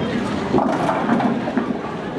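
Bowling ball rolling down the lane, a steady rumble over the general din of a busy bowling alley.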